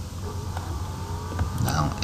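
Steady low background hum with a single faint click about one and a half seconds in; a man's voice starts just before the end.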